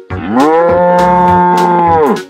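A cow's long moo, rising in pitch at the start, held steady, then falling away at the end, over background music with a beat.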